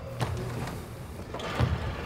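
A steady low hum with a few faint thuds and knocks from a player catching and shooting on a hardwood basketball court.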